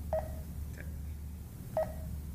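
Garmin nuvi 255W GPS navigator giving two short touchscreen key beeps, about a second and a half apart, as its screen is tapped.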